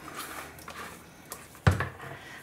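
Thick cold process soap batter being poured from a plastic bowl into a tub of green soap, a soft quiet pour, then one sudden thump near the end.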